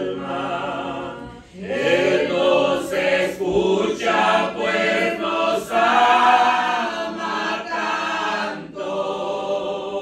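A woman and a man singing a Spanish-language hymn together, with a short break for breath about a second and a half in.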